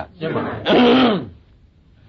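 A man's voice in a recorded Buddhist sermon: a throat-clearing sound running into a held voiced sound, ending a little past a second in, followed by a pause.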